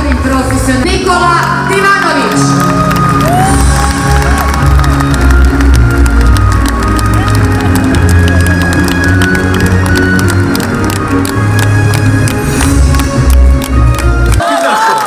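Loud music with a heavy bass beat playing over an arena crowd that cheers and whoops, then claps in rhythm from about four seconds in.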